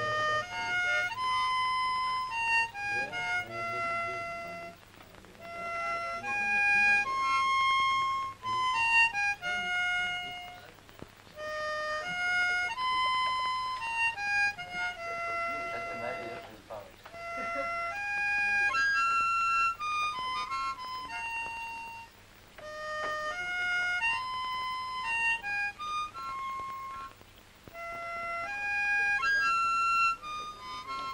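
Harmonica playing a melody one note at a time, in phrases of a few seconds with short pauses between them.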